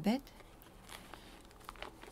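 Faint rustling and crinkling of paper, a few soft scattered crackles, as she handles her book.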